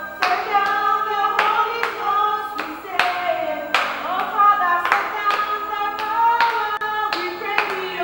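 Women singing a praise song while clapping their hands in time, about two claps a second.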